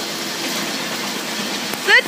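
A steady, even background hiss with a faint low hum under it; a child's high voice calls out right at the end.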